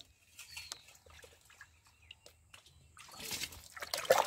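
Water poured from a small steel bowl, splashing and trickling onto the ground, building up in the last second. Before it, a few faint knocks of metal pots being handled.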